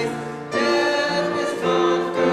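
Voices singing a hymn together in held notes, with a short break between phrases before they come back in about half a second in.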